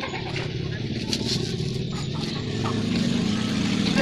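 A motor vehicle's engine running with a steady low hum that grows somewhat louder toward the end, with a few light clicks over it.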